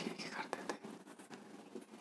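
Faint short strokes and taps of a marker pen writing on a whiteboard, with soft muttering under the breath.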